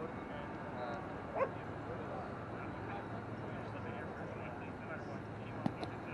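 Outdoor ambience of a steady wind hiss and faint distant voices, with one brief high rising call about a second and a half in. Near the end there is a single sharp slap, where the Spikeball serve is struck.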